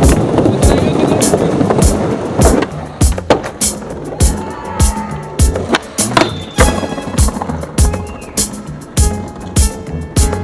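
Hip-hop track with a steady drum beat, over a skateboard: its wheels rolling on wooden decking for the first couple of seconds, then clacks of the board during tricks.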